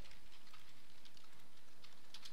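A few faint, scattered clicks of a computer keyboard over low, steady background hiss.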